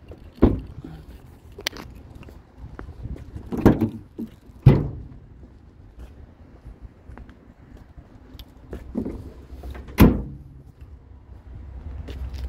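Separate sharp thumps from the body of a Ford Ranger pickup being handled, door and tailgate. There is one thump about half a second in, two louder ones around four and five seconds in, and a last loud thump about ten seconds in, with quiet low rumble between them.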